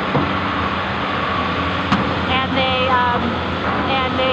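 Hydraulic excavator's diesel engine running steadily over the rush of river rapids, with a single sharp knock about two seconds in as the bucket sets a large rock into the river.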